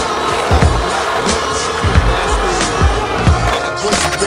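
Hip hop beat with a kick drum about every 0.7 seconds and no rapping, over skateboard wheels rolling on concrete.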